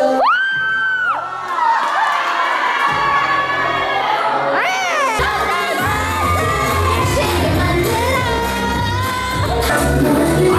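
Young people cheering and whooping over dance music, with long rising 'woo' shouts at the start and again about five seconds in. The music's bass beat comes in at about the same time as the second shout.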